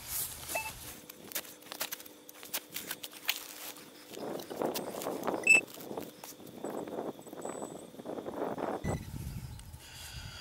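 Digging a plug of turf and soil with a hand digging tool: a string of small cutting clicks, then from about four seconds in a run of rustling, crumbling scrapes as the soil is broken apart by hand.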